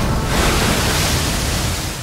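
Loud rushing roar of a large ocean wave breaking, a steady wash of surf noise that eases off near the end.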